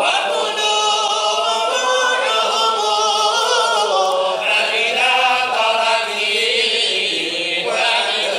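A group of men chanting a religious text together in unison, unaccompanied, in long held notes that waver and bend in pitch.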